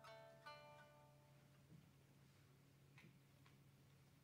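Faint plucked shamisen notes, two struck at the start and about half a second in, ringing out and fading within about a second. After that only a faint low steady hum remains.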